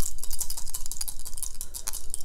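Small game dice rattling as they are shaken in the hand before a roll: a quick, irregular run of clicks.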